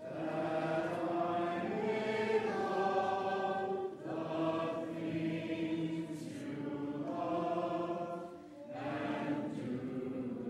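Church congregation singing a slow hymn together in long held notes, with short breaks between phrases about four seconds in and near the end.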